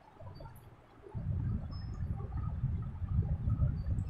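Low, irregular rumbling and rustling handling noise from someone moving close to the microphone, starting about a second in.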